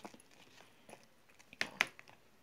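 A spatula stirring thick soap paste in a plastic blender jar, quietly. Near the end come two sharp knocks about a fifth of a second apart, the utensil striking the jar.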